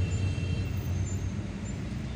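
A steady low rumble of a car's engine and road noise heard from inside the cabin, moving slowly in heavy traffic.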